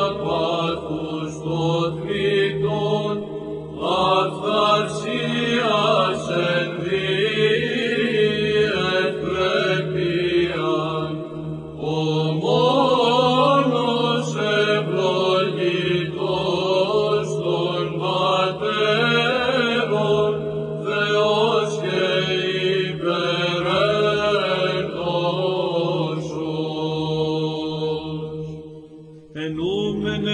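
Greek Orthodox (Byzantine) chant: voices singing a slow, ornamented line over a steady held drone, with a short pause near the end.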